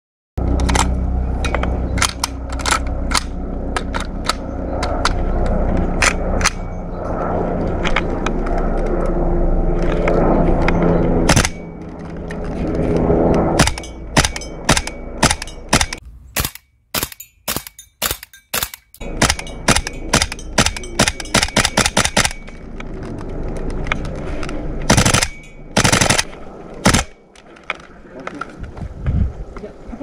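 Tokyo Marui Type 89 gas blowback airsoft rifle firing strings of sharp shots, the blowback bolt cycling with each one. The shots come in quick runs of several a second with short pauses between them. The rifle cycles reliably on its stock Marui internals.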